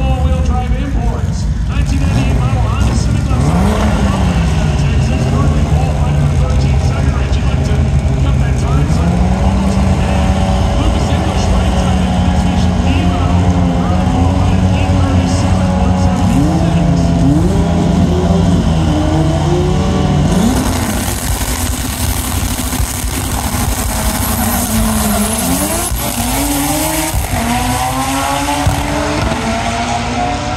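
Drag racing car engines running loud at the strip, the engine pitch rising and falling and holding in steps. A loud hiss joins in about twenty seconds in.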